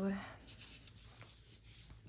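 Faint rustling of sticker sheets as they are leafed through in a sticker binder, with a light tap about a second in. It follows the tail of a woman's drawn-out word at the start.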